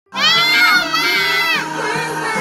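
A young child shouting excitedly in two long, high-pitched yells, the second ending about three-quarters of the way through.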